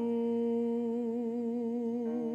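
A man's singing voice holding one long note with a gentle vibrato.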